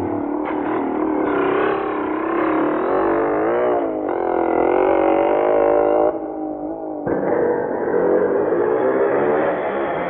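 Motorcycle engine revving, its pitch rising and falling, with a sudden drop about six seconds in and a rise again a second later.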